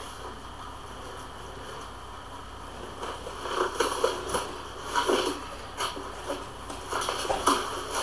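Heavy cardboard shipping boxes being handled and torn open by hand: after a quiet stretch, scattered rustles, scrapes and tearing noises from about three seconds in.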